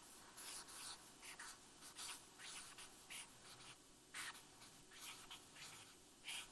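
Marker writing on a paper flip-chart pad: a series of short, faint, scratchy strokes as a word is written.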